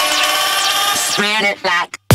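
Electronic dance music build-up: a held vocal-like synth with gliding notes breaks into a rapid stutter about a second and a quarter in, then cuts out briefly near the end.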